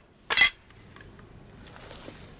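A single sharp clink with a brief ringing tail, as hard broken debris knocks together while it is gathered up from the floor.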